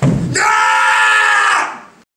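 A person's single long, loud scream, held at a nearly steady pitch for over a second and then fading away.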